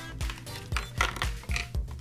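Thin clear plastic bag crinkling in irregular crackles as a small plastic toy figure is pulled out of it, over background music.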